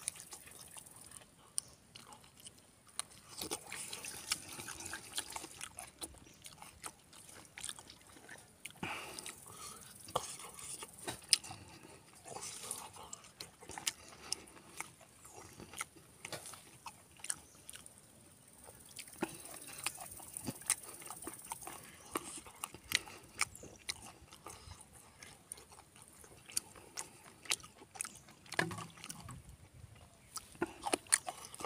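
Close-up eating sounds: irregular wet clicks and smacks of chewing, with fingers mixing rice and pork curry on a steel plate.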